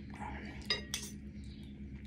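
Metal spoon and fork clinking in a ceramic soup bowl, two sharp clinks close together around the middle, over a faint steady hum.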